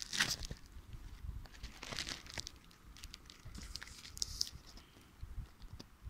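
Plastic bag crinkling and rustling in short, scattered bursts as it is handled.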